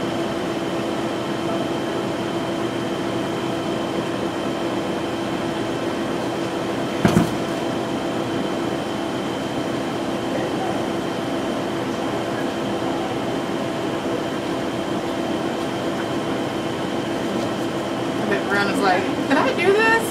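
A steady machine hum holding a few constant tones, with a single short knock about seven seconds in.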